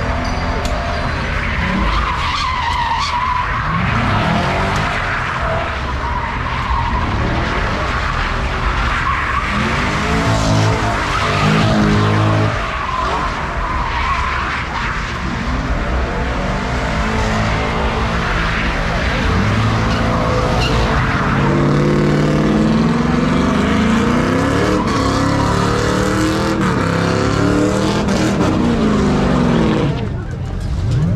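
Car engines revving up and down again and again over the steady screech of spinning tyres during burnouts and donuts, the revving strongest in the second half.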